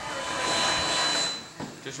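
A loud hiss that starts with a click and fades out after about a second and a half.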